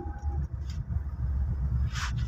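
Steady low rumble of a Toyota Fortuner's engine and road noise, heard from inside the cabin while it drives along a city road.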